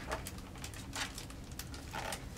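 Faint rustling and a few soft ticks of a picture book's paper page being turned.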